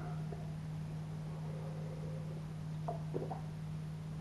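Quiet room tone with a steady low hum, and a few faint sips from a glass of stout about three seconds in.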